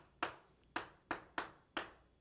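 A writing implement tapping against a board as symbols are written: about five sharp, short taps, unevenly spaced.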